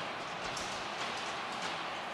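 Ice hockey rink ambience: a steady, even wash of arena noise with a few faint clicks and knocks, such as sticks and skates on the ice.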